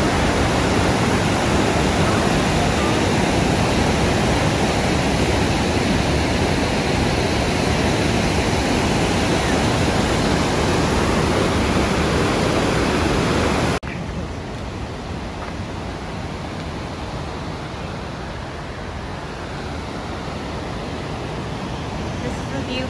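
Montmorency Falls: the steady rush of a large waterfall, loud and close. About 14 seconds in it cuts off suddenly to a quieter, steady rush.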